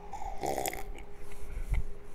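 A man sipping beer from a glass, with a short slurp about half a second in and a gulp near the end.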